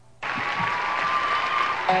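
Concert audience applauding, cutting in suddenly about a fifth of a second in, with a few steady instrument tones under it. Near the end the band comes in with the opening of a country song.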